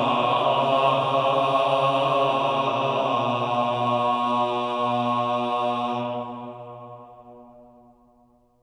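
Male voices of a medieval vocal ensemble singing three-voice Notre Dame organum, holding steady sustained notes over a low held tone. The final sound dies away over the last two seconds.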